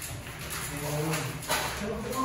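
Indistinct voices and a short vocal sound in a bare, echoing hallway, with a single knock about one and a half seconds in.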